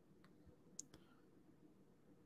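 Near silence with three faint, brief clicks in the first second, the middle one the strongest.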